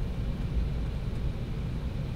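Steady low rumble inside the cabin of an Embraer E190 airliner as it taxis after landing, the engines and the rolling aircraft heard through the fuselage.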